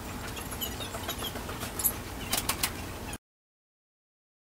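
Quiet indoor room tone with scattered small, sharp clicks and ticks. About three seconds in, the sound cuts off suddenly to dead silence at an edit.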